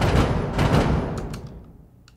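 Orchestral action-music percussion played back from a production session: a low drum ensemble hit without the mid drums layered in, coming in suddenly and fading out over about a second and a half.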